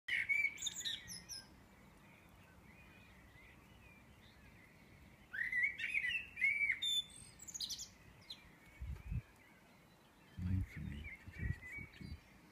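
Songbirds singing in the pre-dawn chorus: a burst of high, chirping song at the start and a louder run of phrases from about five to seven seconds, with quieter calls between. A few brief low thumps come near the end.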